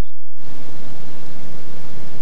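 Creek water rushing over rocks, a steady hiss of flowing water that starts just under half a second in.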